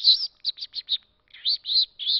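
A man imitating a small bird's chirping with his voice. There is a fast run of short, high chirps, a pause, then two longer chirps, showing the variations in a bird's calls.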